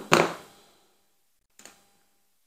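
A sharp clack right at the start that dies away within half a second, then a faint tick about a second and a half in: handling noise from hard plastic model-kit parts and hobby side cutters on a cutting mat.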